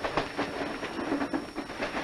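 Moving passenger train carriage rattling and clattering: a steady running noise with irregular small knocks and clicks.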